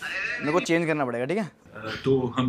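A person laughing in a shaky, bleat-like voice for about a second, then a shorter laugh near the end.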